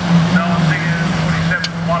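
A pack of junior saloon autograss cars racing on a dirt track, their small engines held at high revs in one steady drone, with race commentary over the top.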